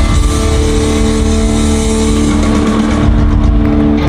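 A rock band playing live, holding one loud sustained chord: the steady pitches ring on over a heavy low end. The high cymbal wash thins out about three seconds in.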